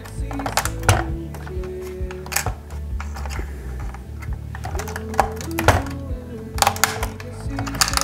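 Sharp clicks and taps of small scale-model parts being handled and pressed into place by hand on a model fire truck's cab, several scattered clicks with the loudest about two-thirds of the way in, over background music.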